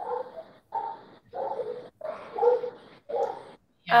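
A run of short, muffled bark-like calls, about six in four seconds, each cut off abruptly as if by a video call's noise gate.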